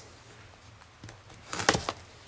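Cardboard software box being cut open: a short burst of crackling, scratching sounds about one and a half seconds in, after a quiet start.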